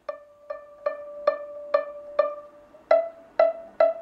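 Violin string plucked pizzicato, one note at a time at about two plucks a second, to check the pitch at each tape finger guide on the fingerboard: about six plucks on D, then from about three seconds in, plucks on E, a step higher.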